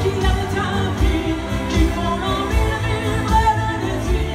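A woman singing into a microphone over musical accompaniment with a steady bass beat.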